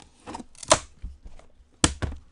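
Gloved hands handling a Panini National Treasures trading-card box: light scraping and tapping with two sharp clicks, one about a third of the way in and the louder one near the end.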